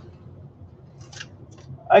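A couple of faint, brief high-pitched scrapes about a second in and again shortly after, from a circuit card being handled at a workbench.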